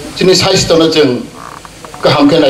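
A man speaking into a microphone through a public-address system: one phrase in the first second, a short pause, then speech again near the end.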